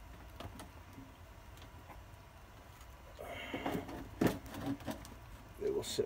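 A plastic seed tray being set down and moved into place on a greenhouse heat tray. After a few quiet seconds of handling there is a short scrape and a couple of sharp clicks about four seconds in.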